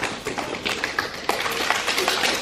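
Hands clapping and tapping from several people, uneven and scattered rather than in unison, as children copy an adult's claps in a copy-me clapping game.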